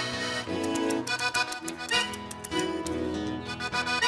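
Pampiana button accordion playing a lively instrumental dance intro, with acoustic guitar strumming and tambourine jingles.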